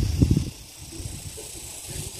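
Wind buffeting the microphone outdoors: uneven low rumbling, loudest in the first half second, over a steady hiss.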